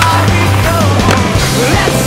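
Rock music playing, with a skateboard grinding along a marble bench ledge beneath it.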